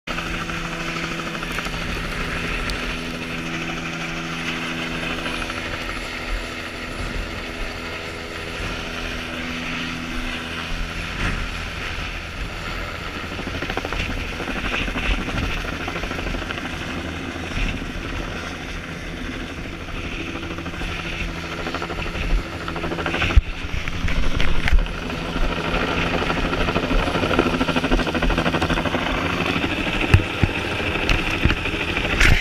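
Helicopter flying overhead, a steady drone of rotor and engine. For the first ten seconds a steady hum of evenly spaced tones sits under it, and a few sharp knocks come about three quarters of the way through.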